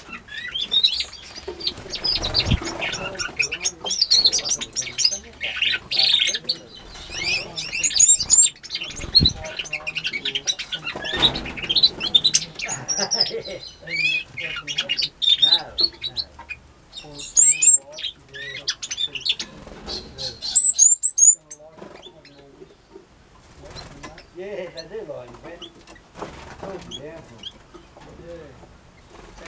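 Small aviary finches chirping and twittering busily in a mixed flock of Gouldian finches, waxbills and canaries. The chirping thins out and goes quieter about three quarters of the way through.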